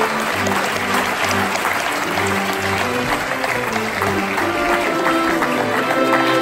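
Audience applauding, mixed with background music that has a steady low bass line.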